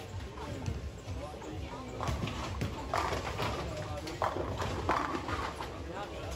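Bowling alley: a steady low rumble of balls rolling on the lanes. From about two seconds in, bowling pins clatter sharply several times as balls hit the racks.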